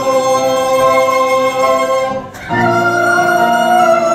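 A small mixed group of men and women singing together in long held notes. The sound breaks off briefly a little over two seconds in, then a new held chord starts.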